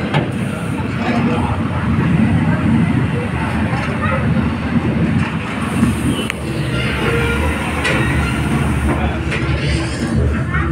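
Soundtrack of an 8D theatre show playing loudly through the hall's speakers: a continuous rumbling, rushing ride noise with voices mixed in.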